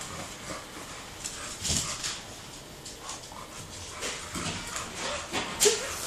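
Pug whimpering briefly a couple of times, with a soft thump a little under two seconds in and a few faint taps.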